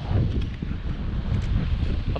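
Wind buffeting the camera's microphone, an uneven low rumble.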